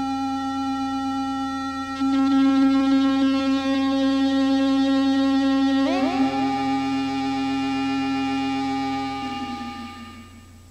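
Electroacoustic music of held electronic tones forming a sustained chord. About two seconds in a louder low tone enters. About six seconds in a cluster of tones glides downward and settles into a new chord, which fades near the end.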